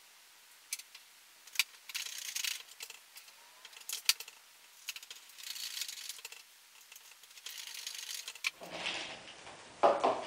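Screwdriver work on a foam RC plane's plastic float mounts: scattered clicks and short scraping, rasping bursts as screws are driven. Just before the end, a louder knock as the plane on its floats is set down on the wooden table.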